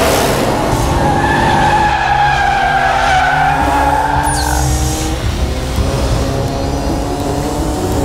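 Film chase soundtrack: the engines of pursuing jeeps and a motorcycle run continuously, mixed with background music. A short falling high whistle comes about four seconds in.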